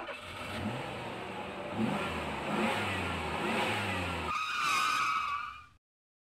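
Sound effect of a vehicle engine revving in repeated rising glides, changing to a higher tone about four seconds in, then cutting off suddenly near the end.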